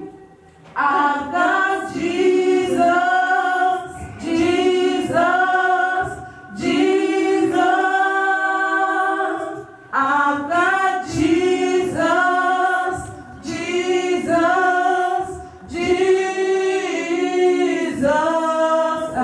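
Gospel choir singing in short repeated phrases, each a second or two long, with brief breaths between them and no instruments standing out.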